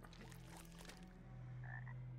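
A frog ribbiting faintly, a few short croaks on a TV episode's soundtrack.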